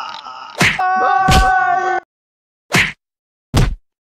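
Fight-scene hit sound effects: four sharp whacks of a stick striking a body. The first two land over a held tone that cuts off suddenly about halfway through, and the last two fall in dead silence.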